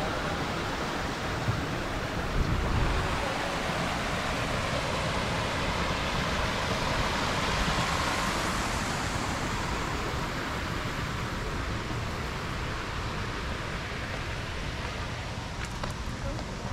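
Small waterfall spilling over stepped rocks into a pond: a steady rush of splashing water, fullest about halfway through.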